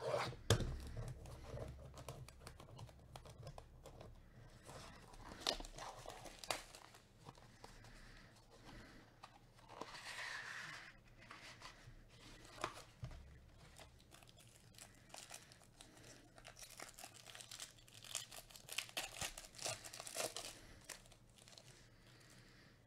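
Faint handling of a baseball-card hobby box and its packaging: tearing and crinkling of wrapper and plastic, with scattered light clicks and rustles as the cards come out. It is busiest around the middle and again near the end.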